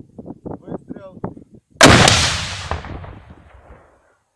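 Anti-tank grenade launcher fired: one sudden, very loud blast nearly two seconds in, with the echo rolling away over the next two seconds. Low voices talk before the shot.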